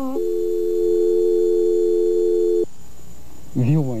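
A steady electronic tone of several pitches held together for about two and a half seconds, then cut off abruptly, like a telephone line tone. A voice asks 'mãe?' near the end.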